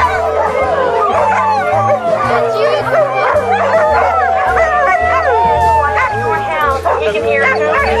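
A pack of greyhounds howling together in a group 'roo': many overlapping howls and yips that rise and fall in pitch without a break. Background music with a steady stepped bass line runs underneath.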